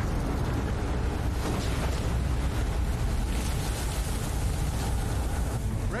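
Heavy seas breaking against a destroyer's bow: a steady loud wash of surf and spray over a deep, continuous rumble.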